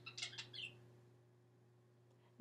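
Near silence: quiet room tone with a faint low steady hum, after a few soft, short high sounds in the first half second.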